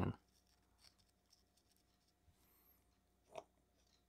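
Near silence with faint small handling sounds of brush-on super glue being worked into a fabric cape on an action figure: a few soft ticks, and one short scrape about three and a half seconds in.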